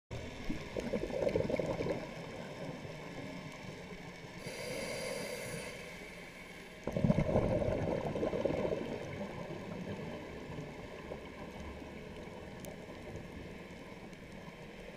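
A scuba diver breathing through a regulator, heard underwater. A gurgle of exhaled bubbles comes first, then a hissing inhale about four and a half seconds in. A louder burst of exhaled bubbles follows at about seven seconds and fades away.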